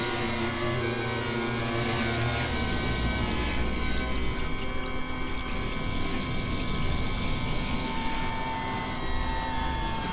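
Experimental electronic drone music: layered, sustained synthesizer tones held at steady pitches. The low drones drop out about two and a half and four seconds in, leaving the higher held tones, and a new mid-pitched tone comes in near the end.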